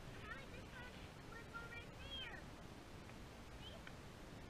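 Faint wind buffeting the microphone, with a few short, high calls that rise and fall in pitch scattered through it.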